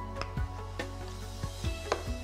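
Background music with sustained tones and scattered light clicks.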